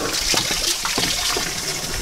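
Water from a garden hose splashing onto a halibut and the cleaning table, a steady hiss as the slime is rinsed off the fish, with a few faint clicks.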